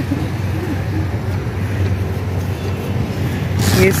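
Steady low engine rumble of street traffic in an open-air market, without sharp events. A woman's voice starts near the end.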